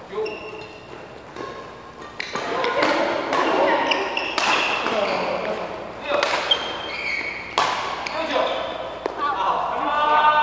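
Badminton rackets striking the shuttlecock in a doubles rally: a string of sharp hits about a second apart from about two seconds in, echoing in a large hall, with short squeaks from court shoes.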